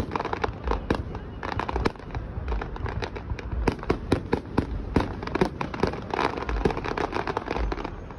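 Aerial fireworks display: a dense run of sharp cracks and crackles from bursting shells, with deep booms about once a second.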